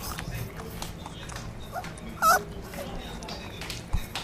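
An animal's single short, high-pitched wavering whine about halfway through, the loudest sound here, over scattered light clicks and rustling.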